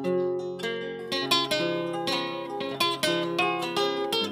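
Acoustic guitar played solo: a run of plucked notes and chords ringing out, the instrumental passage between sung verses of a payada.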